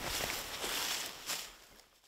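Faint rustling outdoor noise in open grassland, fading out over the second half.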